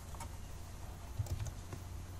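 A few faint computer keyboard keystrokes, most of them between one and two seconds in, as the Java file is sent to compile. A low steady hum runs underneath.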